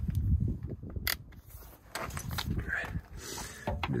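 Handling and rustling noise with a few sharp metallic clicks, about a second in and again half a second later, as a torque wrench and socket are fitted onto a semi truck's belt tensioner.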